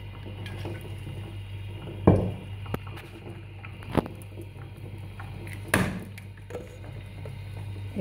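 Olive oil poured from a bottle into a plastic blender beaker, with three or four short, sharp knocks, about two seconds apart, from the bottle and beaker being handled. A steady low hum runs underneath.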